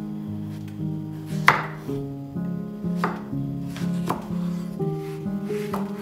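A kitchen knife cutting through food onto a cutting board, four separate strokes at an uneven pace, the loudest about one and a half seconds in, over steady background music.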